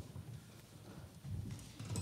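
Faint, irregular low thumps and knocks with light rustling and crackle, the sound of a handheld microphone and papers being handled at a lectern.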